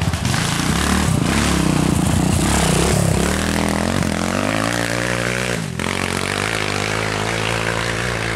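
Enduro dirt bike engine revving hard as the bike accelerates along a dirt trail, its pitch repeatedly climbing and dropping back through gear changes, with a brief dip about three quarters of the way in.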